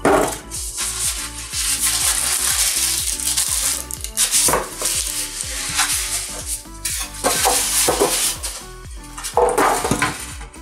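Polystyrene packing foam being pulled off a sound bar, rubbing and rustling against its plastic wrap, with background music playing.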